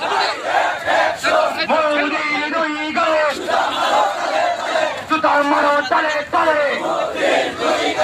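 A crowd of marching men chanting and shouting protest slogans together.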